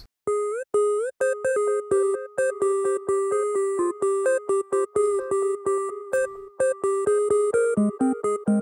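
Serum synth lead playing a very simple, repetitive two-to-three-note melody of short repeated notes: analog sine oscillators, one an octave up and FM'd, through downsample distortion for extra harmonics. It has a little portamento, so the first notes slide up into pitch, and a little delay.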